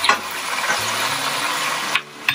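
Onions and curry paste sizzling steadily in a hot frying pan with freshly added lime juice, stirred with a spatula.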